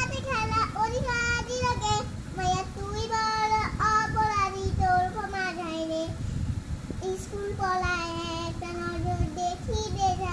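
A young girl singing a Bengali song unaccompanied, holding long, slightly wavering notes, with a short breath pause a little past the middle.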